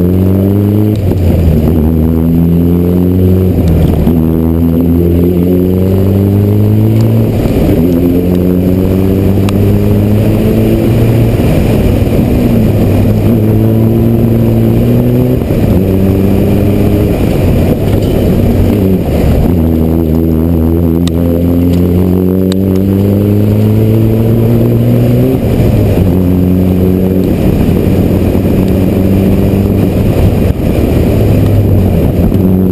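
Rally car engine driven hard, its pitch climbing as it revs out and then dropping at each gear change or lift, again and again, loud throughout.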